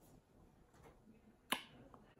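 Near silence with room tone, broken by one sharp click about one and a half seconds in.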